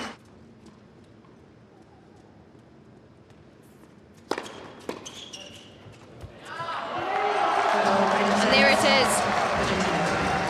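A hushed indoor tennis arena, then a tennis ball struck by rackets: a sharp serve hit about four seconds in and a few quicker hits over the next second and a half. The crowd then breaks into loud cheering and shouting as the set point is won.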